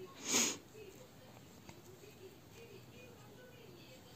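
A single short breath noise from the person, lasting about half a second, near the start; after it, near silence with only faint room tone.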